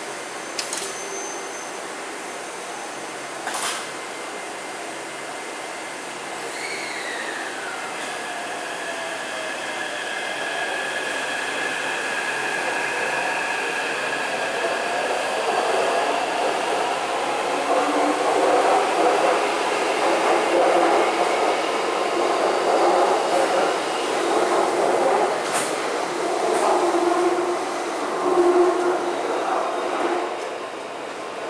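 Taipei Metro C381 train with software-modified traction equipment pulling out of the station: the motors start with gliding pitches, then settle into a steady whine as it speeds up. The noise builds into a louder rumble of wheels and running gear as the cars pass and leave.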